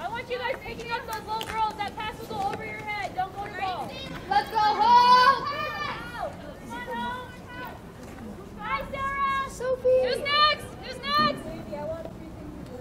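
High-pitched girls' voices shouting and calling out during a lacrosse game, in short overlapping calls. The loudest calls come about four to six seconds in and again near ten seconds.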